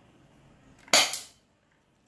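Airsoft gun firing a single BB shot: one sharp crack about a second in that dies away quickly.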